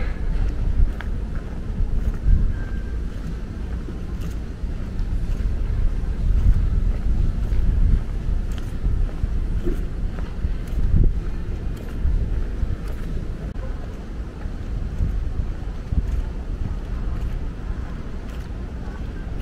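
Wind noise on an outdoor microphone: a gusty low rumble that rises and falls in loudness.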